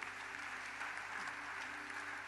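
Congregation applauding steadily in a church hall, with a faint held musical note underneath.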